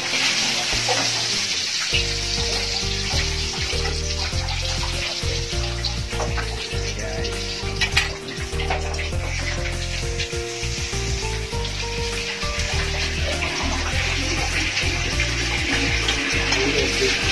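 Eggplant omelette frying in hot oil in a small pan, a steady sizzle with occasional sharper pops. Background music with a low bass line comes in about two seconds in.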